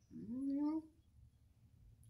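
A woman's short wordless voiced sound, like a hummed 'mm', rising in pitch and lasting under a second near the start.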